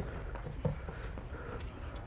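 Quiet room tone with a steady low hum, and one faint short thump about two-thirds of a second in, as of a body or foot on the mat.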